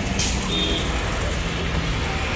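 Road traffic going by: a steady low rumble of engines and tyres, with a short burst of hiss about a quarter of a second in.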